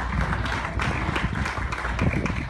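Congregation applauding: a dense patter of many people's claps.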